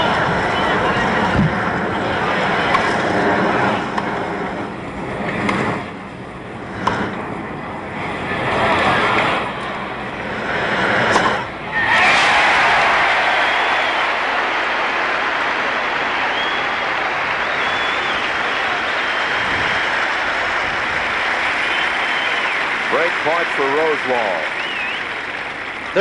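A tennis rally on a grass court: the ball is struck back and forth by rackets, a few sharp hits one to two seconds apart, over the murmur of a stadium crowd. About twelve seconds in, the rally ends and the large crowd breaks into steady applause and cheering for the point won, with a few whistles.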